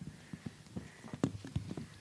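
A string of irregular soft knocks and clicks, several a second, over low room noise.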